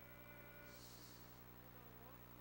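Near silence: a faint, steady electrical hum on the commentary track.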